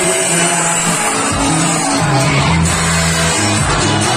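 Loud live band music in an instrumental stretch without singing, with long held bass notes under a dense mix.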